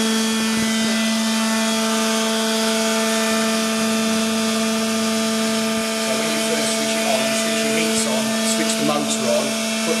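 Hydraulic pump motor of a 1998 Boy 22 D injection moulding machine running with a steady, even hum, while its oil-warming circuit brings the hydraulic oil up toward its recommended 40 degrees.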